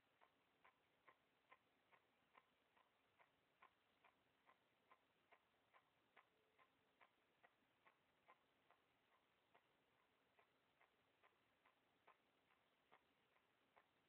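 Faint, even ticking, a little over two ticks a second, over near silence.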